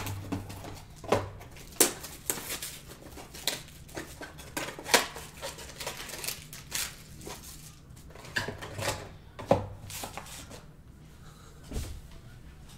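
A trading card box being unwrapped and opened by hand: irregular taps, scrapes and rustles of cardboard and plastic wrap, with a few sharper clicks.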